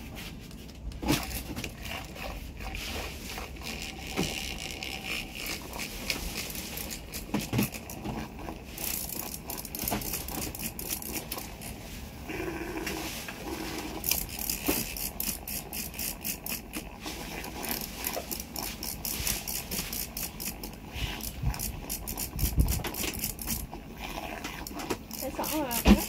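Handheld milk frother working milk into foam in a glass, a fast rattling and scraping against the glass that grows busier and louder from about nine seconds in, with a few sharper knocks.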